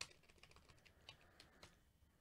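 Faint computer keyboard typing: a sharp key click at the start, then scattered quiet key clicks.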